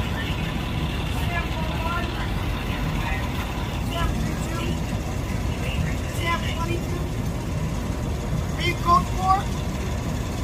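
A large vehicle's engine idling with a steady low rumble. People talk at a distance over it, a little louder near the end.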